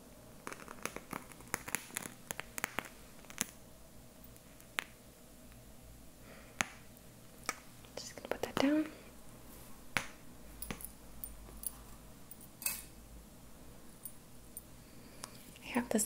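Burning incense match crackling and popping with many sharp pops, a quick cluster in the first few seconds, then scattered pops; she wonders whether the humidity makes them pop.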